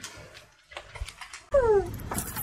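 Faint rustling and soft handling noises as a tabby cat is stroked. About a second and a half in, a louder background sets in abruptly with a short, high cry that falls in pitch.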